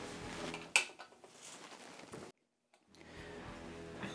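A single sharp click of a lamp switch being turned off, about three quarters of a second in, over faint background music that then drops away to faint room tone.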